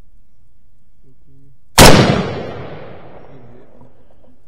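A single gunshot about two seconds in, very loud, its echo dying away over about a second.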